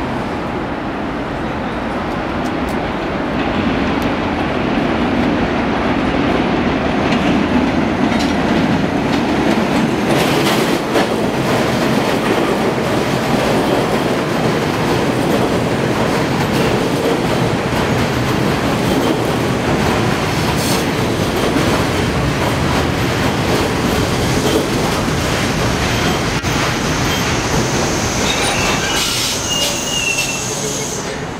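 R42 subway train running into an elevated station on steel structure: a steady loud rumble of wheels on rail that grows over the first several seconds, with a few sharp clicks from rail joints. Near the end a high-pitched squeal sets in as the train slows.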